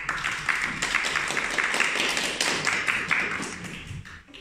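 Audience applauding, breaking out suddenly and tapering off near the end.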